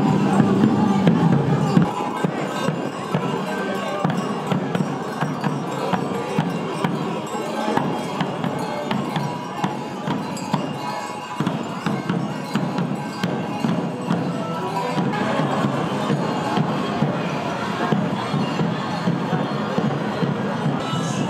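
Traditional folk music playing amid crowd chatter in a street parade. It is a little louder for the first two seconds, then drops to a quieter, busier mix.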